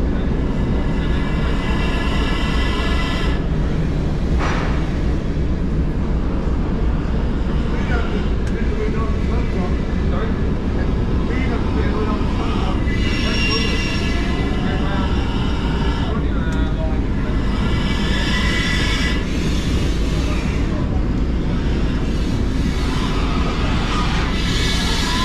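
BR Standard Class 9F 2-10-0 No. 92134, cold and unlit, rolling slowly along the rails while being shunted: a steady heavy rumble from its wheels and running gear. A high squeal comes and goes a few times.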